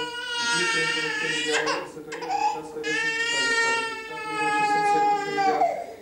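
Baby crying: a long wail, a short cry, then a second long wail that falls in pitch as it ends.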